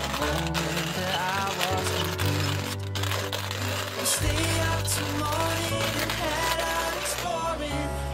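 Background music: a melodic instrumental track over sustained bass notes.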